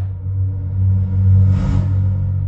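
Outro logo sting: a loud, steady low synthesized drone with a brief whoosh about one and a half seconds in.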